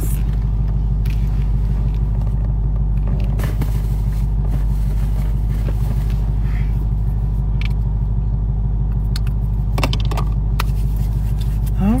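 Steady low hum of a car idling, heard from inside the cabin, with a few light clicks and rustles from hands moving.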